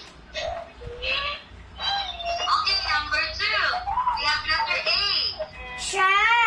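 High-pitched young children's voices talking in short, broken phrases.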